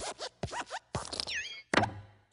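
Cartoon sound effects of the Pixar Luxo Jr. desk lamp hopping: quick springy metal squeaks and clicks, then a squeak that glides down in pitch. A loud thump comes near the end as the lamp squashes the letter I flat.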